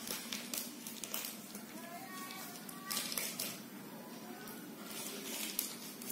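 A plastic sachet crinkling and a spoon clicking, in a few sharp bursts, as powder is spooned out into a plastic mixing bowl. Faint voices are in the background.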